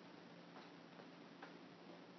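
Near silence: room tone with a few faint, short ticks, about two a second.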